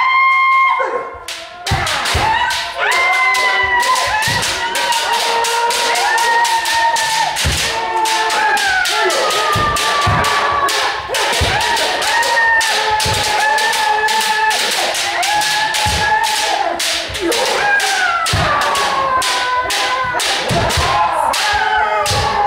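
Kendo practice with many pairs at once: bamboo shinai striking armour and feet stamping on a wooden floor, about three sharp hits a second. Over them run long, overlapping kiai shouts from the fencers, starting with a sharp yell at the very beginning.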